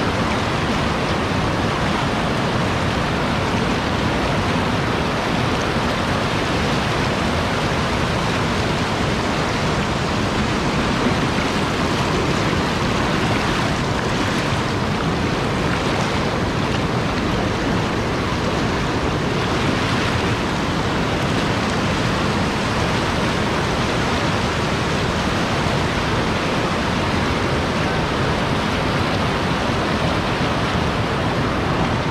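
Beas River rapids: fast mountain water rushing over boulders, a steady, unbroken rush of white water.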